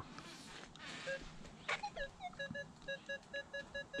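Minelab X-Terra Pro metal detector sounding target tones as its coil passes over a pull tab, which it reads at 31. A few separate tones, some sliding down in pitch, come first, then a quick run of short beeps at one pitch, about six a second.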